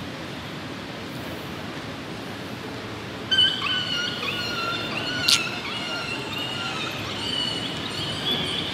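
Steady station rumble, then from about three seconds in a mobile phone ringtone plays a high, stepping electronic melody, with one sharp click partway through.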